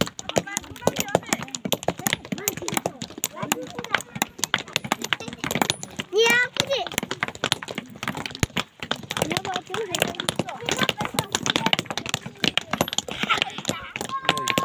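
Many hand hammers striking stone as rock is broken into gravel by hand: a dense, irregular clinking of metal on stone from several workers at once.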